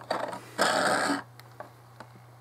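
Clear plastic blister packaging crinkling as a starship model is pulled out of it: a few light handling noises, then one loud rustle lasting about half a second. A steady low hum runs underneath.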